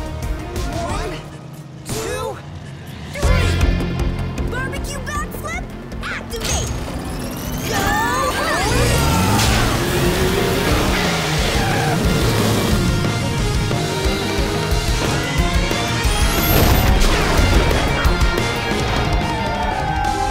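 Cartoon race soundtrack: action music mixed with racing sound effects, a loud hit about three seconds in, then many rising and falling whooshes and engine-like sweeps.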